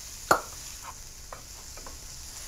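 Wooden spoon stirring food in a metal cooking pan over a faint, steady sizzle. There is one sharp knock of the spoon against the pan about a third of a second in, then a few lighter taps.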